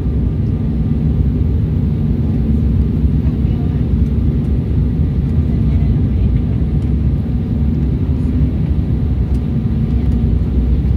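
Steady low rumble inside the cabin of an Embraer 190 airliner in flight on approach: its General Electric CF34-10E turbofan engines and the airflow over the fuselage, heard from a window seat.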